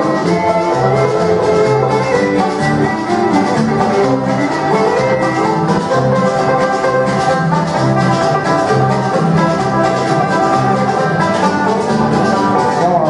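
Live bluegrass band playing an instrumental tune on banjo, fiddle, acoustic guitar and electric bass guitar, the bass keeping a steady beat of alternating low notes.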